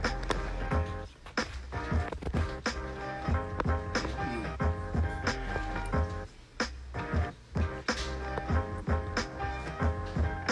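Electronic instrumental beat played live from a pad sampler: kick and snare hits over heavy, bumping bass, with a held melodic chord line. The beat thins out briefly about a second in and again a little past six seconds.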